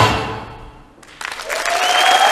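Folk dance music ends, its last sound dying away over about a second; then audience applause starts and swells, with a steady held tone sounding beneath it.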